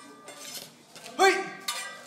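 Metal kitchen utensils clinking on a wooden cutting board, with one sharp, loud clatter about a second in.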